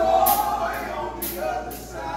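Male gospel quartet singing in harmony, a held note ringing out at the start, over a steady bright hit about twice a second.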